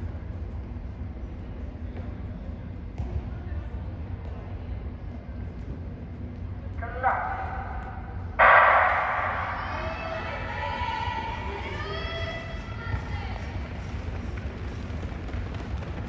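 Indoor 60 m sprint start over a steady low hall rumble: a short spoken "set" command about seven seconds in, then a sudden loud crack of the starting gun that echoes away. After it, spectators shout and cheer as the race is run.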